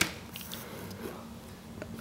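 Quiet handling sounds: a folding knife moved against the side of a cardboard product box, with a few faint light ticks over room tone.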